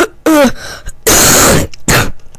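A synthesized cartoon voice vocalizing: a short syllable, then a harsh hiss about a second in that lasts about half a second, and a brief second hiss near the end.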